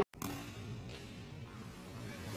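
Quiet stretch between two smashes: a brief drop to silence at the start, then only faint background sound with no hit in it.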